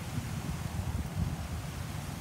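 Wind gusting on the microphone, an uneven low fluttering, over a steady hiss of light drizzle.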